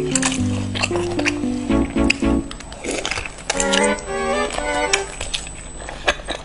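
Background music: a melody of held notes moving in steps over a bass line, with scattered sharp clicks.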